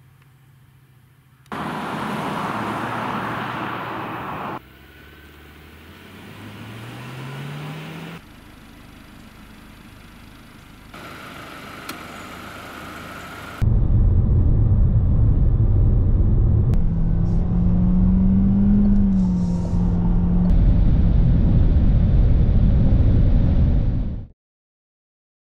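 Renault Austral with a 1.3-litre four-cylinder mild-hybrid petrol engine, heard in short cuts. A few seconds in its engine note rises in pitch as it revs. From a little past halfway a loud, steady low rumble of the car running at high speed fills the rest.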